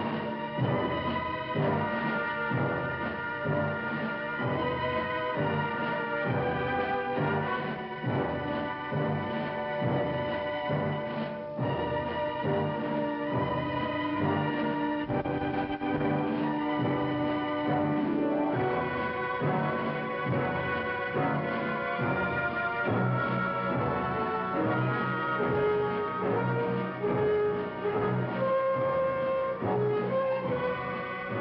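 Orchestral film score with brass and timpani over a steady pulsing low beat, with one long held low note in the middle.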